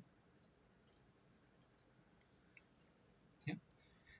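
A few faint, isolated computer mouse clicks in near silence.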